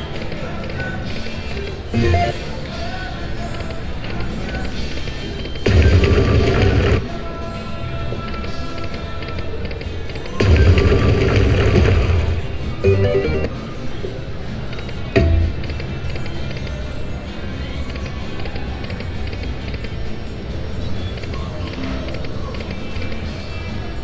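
Aristocrat Lightning Link slot machine playing its electronic music and reel-spin sounds as the reels turn, broken by several short, louder win jingles, the longest about two seconds, as small line wins pay out.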